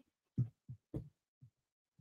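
Four short, quiet, low sounds spread over the first second and a half, like a person's soft chuckles or breaths into a headset microphone.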